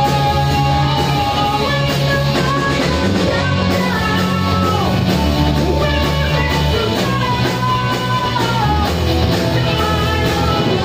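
A live rock band playing: a man singing into a microphone over electric guitars, bass guitar and a drum kit, steady and loud.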